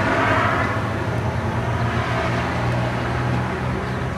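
Steady outdoor background rumble with a constant low hum.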